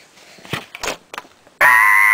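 A few faint short breathy noises, then about one and a half seconds in a voice suddenly breaks into a loud, shrill, held note.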